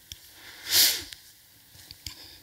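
A woman sniffing once, sharply, close to a headset microphone, about halfway through. Small clicks come just before and after the sniff.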